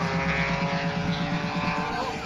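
Race cars' engines running hard down a drag strip, heard from trackside, their pitch sliding slowly downward.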